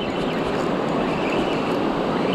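Steady rush of ocean surf washing over sand, with wind noise on the microphone.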